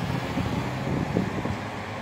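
Road traffic: a motor vehicle's engine running steadily close by, a low hum.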